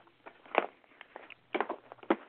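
A few short, soft breath and mouth noises over a telephone line, in a pause between spoken passages.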